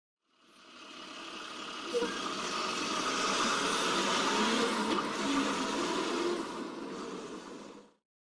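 Intro sound effect under the title animation: a rushing noise that fades in over the first couple of seconds and fades out near the end, with a sharp click about two seconds in.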